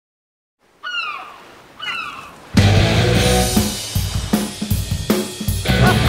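Two short cries falling in pitch, about a second apart, then a loud rock song with a full drum kit starts abruptly about two and a half seconds in.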